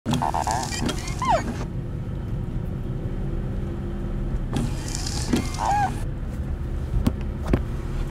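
Windshield wipers sweeping across rain-wet glass about every four and a half seconds. Each sweep is a swish with a short rubbery squeak that glides in pitch, over the steady low rumble of the car's cabin. A few soft knocks come near the end.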